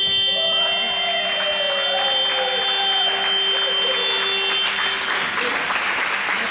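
Sports hall scoreboard buzzer sounding one long steady tone for nearly five seconds, the signal that ends the match, with players' shouts and cheers rising under it; applause follows near the end.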